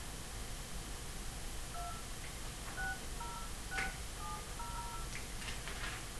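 Phone keypad dialing a number: about six short touch-tone (DTMF) beeps, each two notes sounded together, spaced over roughly three seconds, followed by a few clicks near the end.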